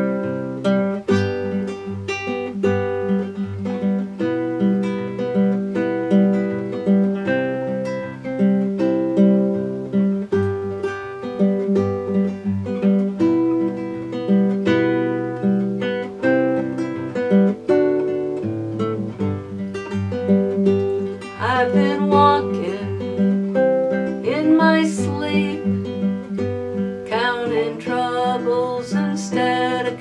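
Nylon-string classical guitar played as an unaccompanied song introduction, a steady run of single notes and chords; about two-thirds of the way through, a woman's voice joins, singing over the guitar.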